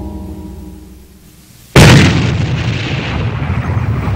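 Sustained background music fades away over the first second and a half, then a sudden loud boom like an explosion, which trails off into a continuing rumble.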